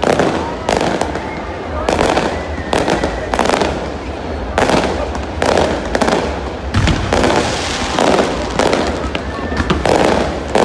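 Fireworks going off in quick succession: about a dozen loud bangs, each followed by a brief crackle, coming roughly once a second.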